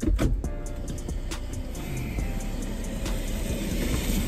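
Background music with a steady beat over a low rumble of car and street traffic noise.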